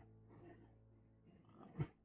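Near silence: a pause in speech, with faint low traces about half a second in and one short faint sound near the end.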